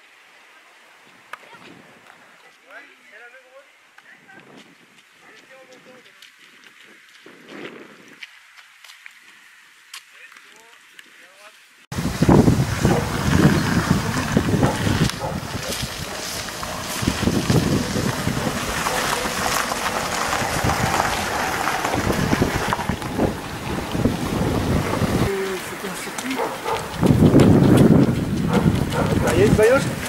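Quiet open-air ambience with faint distant voices. About twelve seconds in it changes suddenly to loud wind buffeting the microphone, with voices mixed in.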